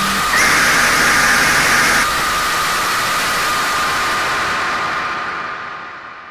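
Loud wash of harsh, static-like noise from many overlaid screamer-video soundtracks, with a steady high whine running underneath. A brighter, shriller layer drops out about two seconds in, and the whole mix fades away near the end.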